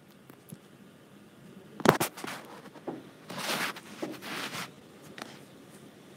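Handling noise from a phone that is recording while it is moved: a sharp knock about two seconds in, then two rustling, scraping swishes and a few small clicks.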